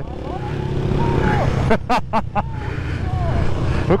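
Honda CB300F Twister's single-cylinder engine running at road speed while the bike eases off, with wind rushing over the microphone.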